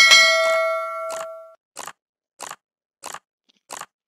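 A bright bell-like notification chime from a subscribe-button animation rings out and fades over about a second and a half. It is followed by soft, evenly spaced ticks about every two-thirds of a second.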